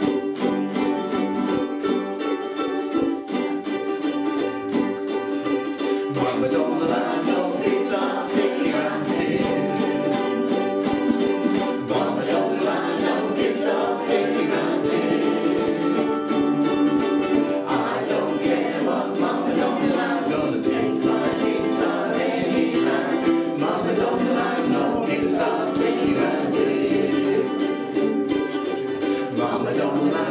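A group of ukuleles strumming a song together in a small room, with the group singing along from about six seconds in.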